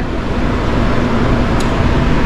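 Steady, loud background rumble and hiss with a faint low hum running under it.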